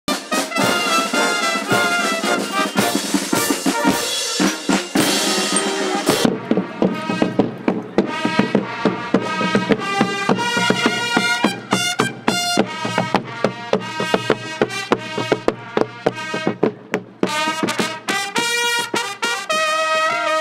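Marching brass band music with drums. About six seconds in it changes abruptly to a piece of short, quick notes over regular drum strokes.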